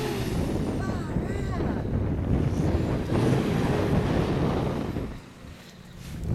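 Nissan Patrol four-wheel drive's engine running as it drives in soft dune sand, mixed with wind buffeting the microphone. The sound drops off sharply about five seconds in.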